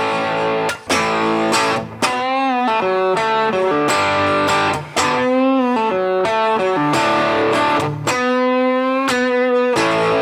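Gibson Les Paul electric guitar played through an amp with a little overdrive gain, plugged in by cable. It plays a lead lick of held single notes, with several string bends and vibrato and short breaks between phrases.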